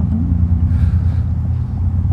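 A loud, steady low rumble with no speech, and a faint hiss rising over it about halfway through.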